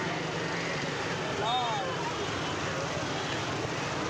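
Busy street ambience: a steady hum of motorbike and scooter traffic mixed with background crowd chatter, with a brief voice rising above it about a second and a half in.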